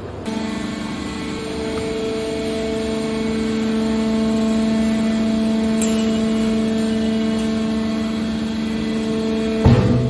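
Hydraulic power unit of a scrap-metal baler running, a steady hum of several even tones. Shortly before the end there is a sudden loud clank.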